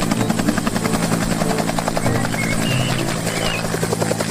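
Military utility helicopter with a two-bladed main rotor, of the Bell UH-1 "Huey" type, hovering low and lifting off: a steady engine drone under a fast, even beat of the rotor blades.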